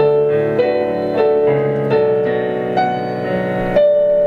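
Digital stage piano played solo in a slow, sustained piece, a new note or chord struck about every half second and left ringing.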